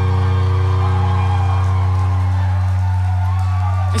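A live rock band holding a sustained chord at the close of a song, with a steady low note droning underneath.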